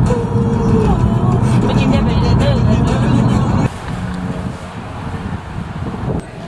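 Car cabin noise while driving, a steady low hum with a voice over it, then a sudden drop to a quieter steady background a little over halfway through.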